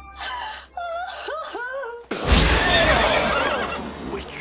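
A woman's exaggerated fake sobbing: high, wavering wails that slide up and down in pitch. About two seconds in comes a sudden loud rushing burst that fades over a second or so.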